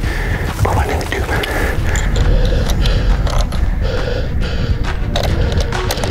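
A rifle and clothing being handled: a string of short clicks, scrapes and fabric rustles over a low rumble.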